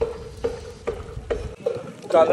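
Rain beginning to patter, with wind rumbling on the microphone until it drops away about a second and a half in. A steady low hum pulses about twice a second underneath.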